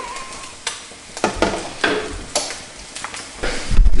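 Potato latkes sizzling as they shallow-fry in oil in a frying pan, with scattered sharp crackles of spitting fat. A low rumble comes in near the end.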